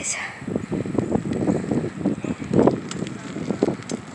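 Wind buffeting the microphone of a camera carried on a bicycle moving fast along an asphalt road: an uneven, gusty rumble.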